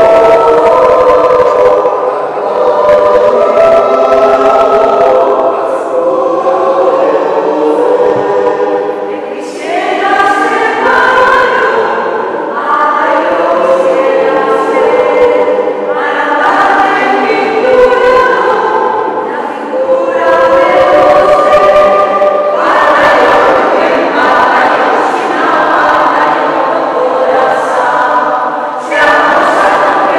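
A mixed choir of men's and women's voices singing in a large stone church, in phrases a few seconds long with short breaks between them.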